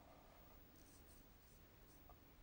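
Near silence, with a few faint, brief scratches of a paintbrush stroking across paper from about the middle onward.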